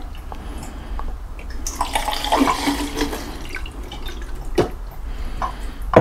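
Film developer solution poured from a glass beaker into a plastic film developing tank through its light-trap funnel, a gurgling pour lasting about a second and a half, followed by a few light knocks near the end.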